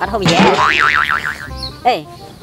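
A cartoon 'boing' sound effect: a springy tone wobbling rapidly up and down in pitch for about a second, following a loud burst at the start, over background music.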